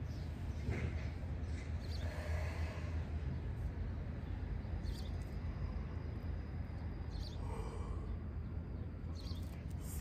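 Wind on the microphone, a steady low rumble. Over it come a few forceful breaths out during a yoga breathing exercise, one about a second in, another around two seconds and another near eight seconds.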